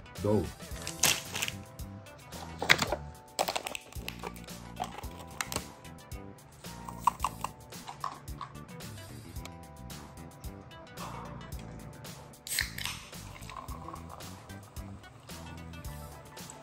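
Background music, with scattered crinkles and clicks of plastic candy packaging and plastic jelly cups being handled.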